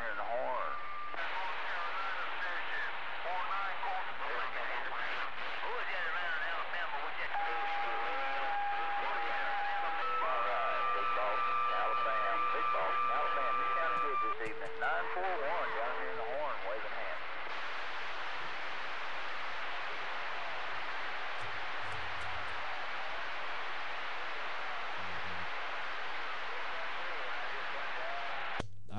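Radio receiver hiss and static with faint, broken distant voices that can't be made out. Several steady whistling tones come and go in the middle. The voices fade about halfway, leaving only static: the far station is too weak to get through.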